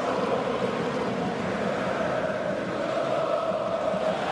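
Football stadium crowd chanting and singing together in a steady, continuous drone.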